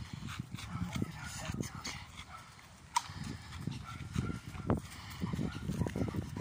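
Two large dogs walking on leashes over a dirt road: irregular footfalls and scuffing with breathing, and two sharp clicks about halfway through.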